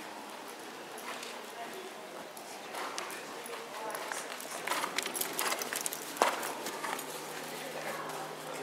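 Hoofbeats of a horse: a run of knocks that grows louder and closer about halfway through, the sharpest one near the end, with people talking in the background.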